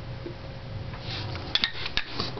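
Steel parts of a Suzuki TL1000R gearbox clinking as they are handled: a shift fork and gears knocking together, with a few sharp metallic clinks in the second half.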